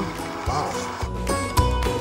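Background music with held tones and a steady beat, the beat growing stronger near the end.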